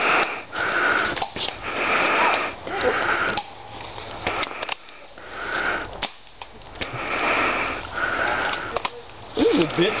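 Heavy breathing close to the microphone, a run of deep in-and-out breaths, with footsteps crunching through dry leaf litter.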